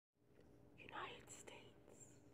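A faint whispering voice in near silence, starting about a quarter of a second in and loudest about a second in.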